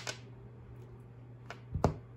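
A few short, sharp clicks over a steady low hum: one right at the start, then two close together near the end, the second the loudest.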